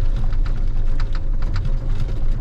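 Ponsse Scorpion King forest harvester on the move, its diesel engine and drive giving a loud steady low drone with light rattles, heard from inside the cab.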